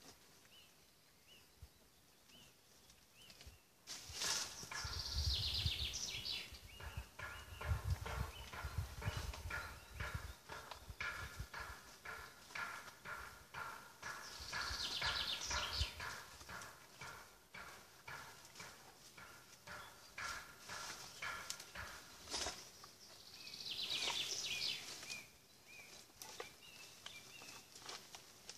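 Irregular knocks, cracks and rustling from someone up in a tree fitting a wooden swarm trap among the branches, with heavier thumps about five to ten seconds in. A songbird's short descending trill comes three times, about ten seconds apart.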